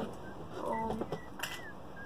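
A short hummed or murmured voice sound from a person, about half a second long, followed by a light click about one and a half seconds in.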